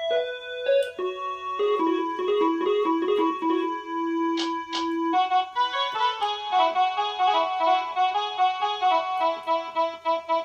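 Casio SA-21 mini electronic keyboard played by hand: a single-line melody of a Koraputia Desia song tune, slower repeated notes at first, then a quicker run of notes from about six seconds in. Two sharp clicks come a little before the middle.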